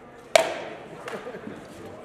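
A rattan sword blow landing in armoured combat: one loud, sharp crack about a third of a second in, with a short echo, then a couple of lighter knocks.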